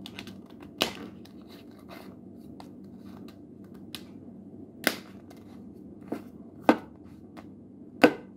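Soft rustling and rubbing from a long rubber modeling balloon being handled and worked, with a few sharp clicks scattered through at irregular times.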